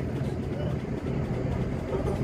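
Steady engine and road noise heard from inside a moving vehicle's cabin: a low, even hum under a haze of tyre noise.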